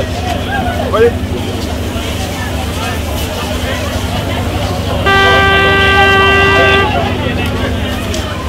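Crowd chatter over a steady low hum, cut across about five seconds in by one horn blast of about two seconds on a single steady pitch.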